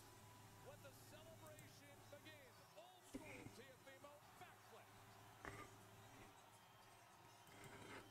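Near silence, with a very faint low hum and faint, far-off voice-like sounds in the first half.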